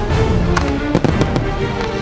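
Aerial firework shells bursting with sharp bangs, the clearest about half a second and a second in, over loud orchestral music playing throughout.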